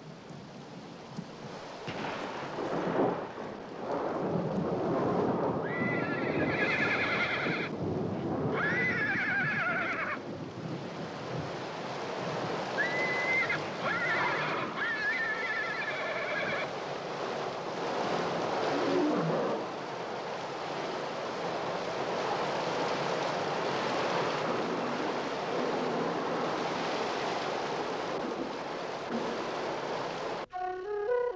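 Tropical thunderstorm: heavy rain with rumbling thunder swells. High wavering animal cries cut through it several times, mostly in the first half.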